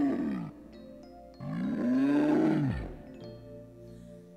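Bear roars in a stage play: the tail of one long roar, then a second roar about a second and a half in, each rising and falling in pitch, over soft background music.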